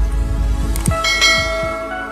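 Intro animation sound effects: a couple of quick clicks, then a bell chime from about a second in that rings on and slowly fades, over a fading low boom.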